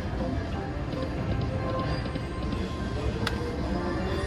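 Video slot machine playing its reel-spin music and tones while the reels turn, over the steady din of a casino floor, with one sharp click about three seconds in.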